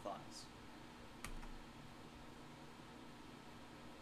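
A single computer keyboard keystroke about a second in, pressing Enter to accept the installer's automatic partition layout, over faint steady room hiss.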